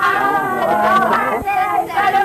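A high voice singing a melodic song over musical accompaniment.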